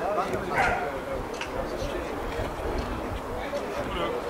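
A dog barks once, sharply, a little over half a second in, over a background of people talking.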